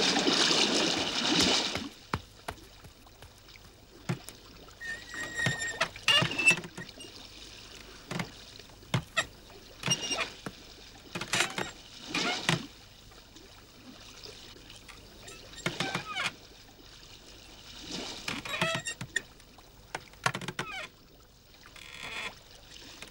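Sea water rushing and splashing along a sailing boat's hull, loudest in the first two seconds, then softer, with short sharp sounds every second or two.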